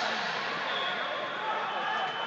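Steady background chatter of many voices in a large, echoing hall, with no single voice standing out.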